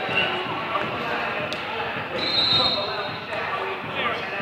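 Players shouting and calling over one another in a large, echoing hall, with thuds of dodgeballs being thrown and hitting, and a short shrill high note a little after two seconds in.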